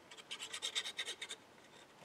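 Fine nozzle of a liquid glue bottle scratching across cardstock as a line of glue is laid down: a quick run of faint scratches that stops after about a second and a half.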